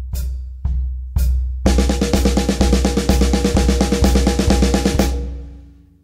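Drum kit: a steady bass drum pulse about twice a second, then an even run of single-stroke sixteenth notes (alternating hands) from about two seconds in, stopping near the end and ringing out.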